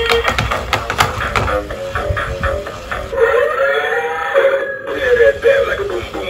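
Dance song with a steady beat playing from a Black Panther dancing robot toy's built-in speaker, with a voice-like melodic part about halfway through.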